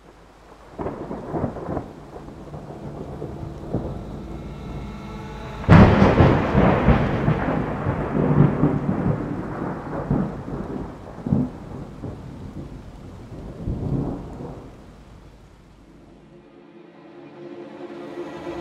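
Thunderstorm sound effect: rolling thunder rumbles over rain, with one loud, sudden thunderclap about six seconds in that dies away slowly. Further rumbles follow, and the storm fades near the end.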